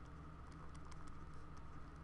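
Faint, scattered taps and scratches of a stylus writing letters on a tablet screen, over a steady low hum.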